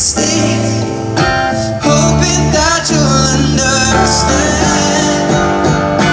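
Live concert music through an arena PA, led by a strummed and picked acoustic guitar, with some singing.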